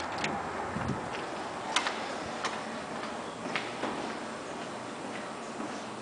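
Footsteps on a hard tiled floor: sharp clicks about every half second to second, over a steady background hiss.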